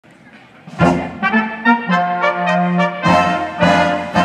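Czech brass band (dechová hudba) striking up just under a second in: loud accented chords, then held brass notes over a low bass part.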